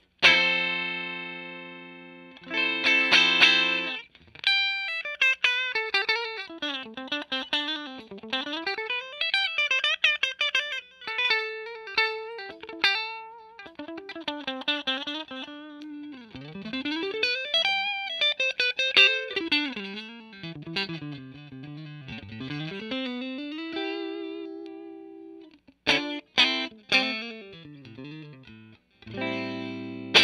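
Fender Player Plus Stratocaster electric guitar with Player Plus Noiseless pickups, played with a clean tone. A chord rings out at the start, then come quick single-note runs sweeping up and down in pitch and a held note, and short choppy strummed chords near the end.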